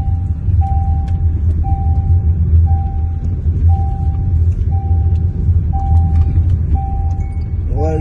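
A car's dashboard warning chime beeps about once a second, each beep a steady single tone lasting most of a second. Under it runs the low rumble of the car driving, heard from inside the cabin.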